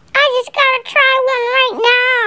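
A high-pitched voice singing a short wordless phrase in a few held, fairly level notes, with a quick dip in pitch near the end.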